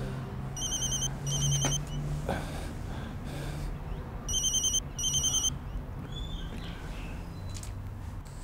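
Mobile phone ringing with a trilling double-ring tone: two rounds, each of two short high bursts, the second round about four seconds in.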